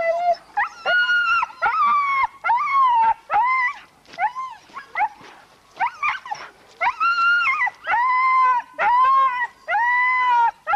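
Siberian huskies howling and yelping in a rapid series of high, rising-and-falling calls, with a short lull midway. This is typical of sled dogs excited to run at a race start.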